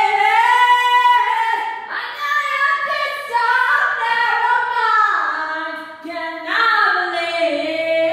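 A woman singing solo and unaccompanied, in long, high held notes that glide between pitches, with short breaks between phrases about two and six seconds in.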